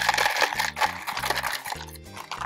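Small lava rock pebbles poured from a plastic cup into a pot, rattling and clattering as they fall. The rattle is densest at first and thins out after about half a second. Background music with a steady bass line plays under it.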